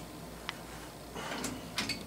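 Wrench turning a mounting bolt that fastens a South Bend shaper to its cabinet: a single metal click about half a second in, a short scrape a little past a second, and a couple of quick clicks near the end.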